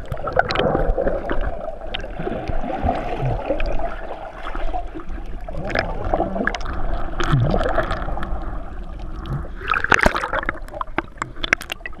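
Muffled underwater sound from a GoPro in its waterproof housing below the sea surface: steady rushing water with scattered clicks and bubbling, and a louder burst of splashing noise about ten seconds in.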